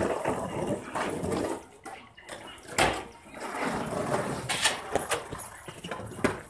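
Skateboard wheels rolling over rough, cracked asphalt, with a sharp knock about three seconds in and a smaller one near the end.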